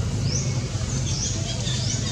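Birds calling with short, rising high chirps repeated every half second or so, over a steady low hum.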